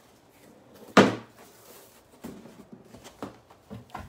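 A single sharp knock about a second in, like something being shut or set down hard, then a few lighter clicks and taps of things being handled.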